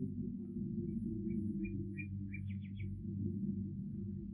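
A bird chirping: about ten short chirps that come closer together towards the end, over a steady low hum. It is a birdsong effect marking daybreak in the radio play.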